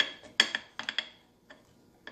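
Metal skewers clinking against a ceramic plate as skewered strawberries are handled: about six sharp clinks, some with a short ring, in the first second and a half.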